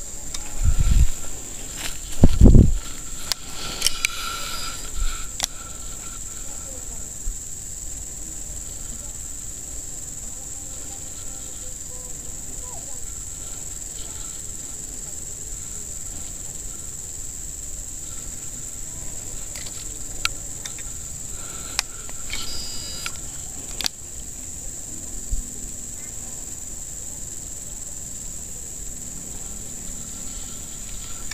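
Steady high-pitched insect chorus, a constant shrill drone, with two low thumps near the start and a few faint clicks.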